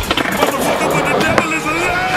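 Skateboard wheels rolling over concrete, with a sharp clack of the board about one and a half seconds in as the tail is popped for an ollie.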